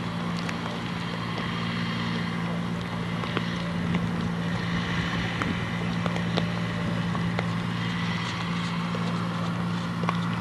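A steady low hum under a hiss of wind on the microphone, with faint scattered ticks.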